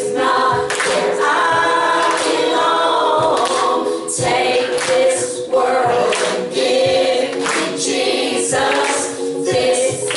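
A woman and a young girl singing a Christian song together into microphones.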